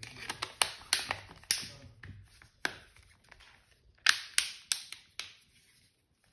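Plastic back cover of a Samsung Galaxy A02s being pressed onto the phone's frame by hand, its clips snapping into place in a series of sharp clicks. The clicks come in two clusters with a single click between them.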